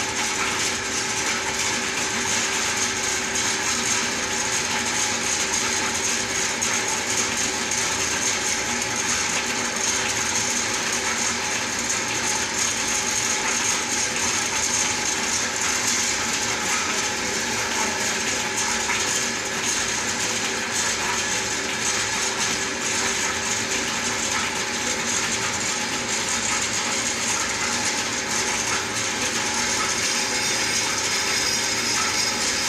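Metal lathe running steadily while its boring bar cuts into the end of a turning tamarind-wood log, hollowing it out as the mortar of a mustard-oil ghani. An even machine noise with several held tones.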